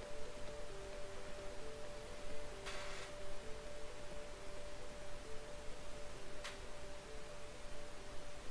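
Soft, steady electronic tones: one held note with two lower notes taking turns beneath it, like a sparse ambient background track. A brief hiss comes about three seconds in, and a faint click near the end.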